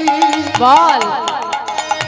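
A woman singing a Bengali devotional kirtan, her voice gliding and ornamenting the melody after a held note, over a steady rhythm of drum and percussion strokes.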